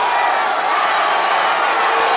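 Crowd of many voices cheering and shouting together, a dense steady din with no single voice standing out.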